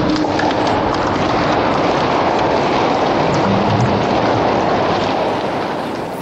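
Audience applauding with dense, steady clapping that eases off near the end.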